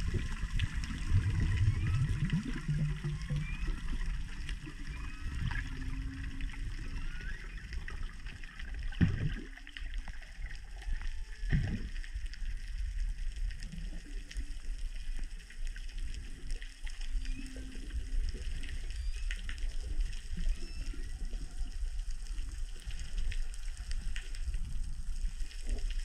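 Underwater water noise heard from a camera in the water, with low rumbling and sloshing. Short low tones that are humpback whale calls sound over the first few seconds and come back briefly twice later. A couple of sharp knocks come in the middle.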